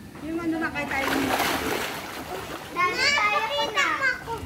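Splashing of a child swimming and kicking in a pool, followed by a child's high-pitched voice calling out near the end.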